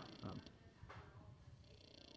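Near silence: faint room tone after a brief spoken "um", with one faint click about a second in.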